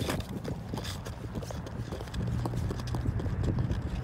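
Ice skate blades clicking and scraping on rough pond ice in quick, irregular strokes, over a low steady rumble.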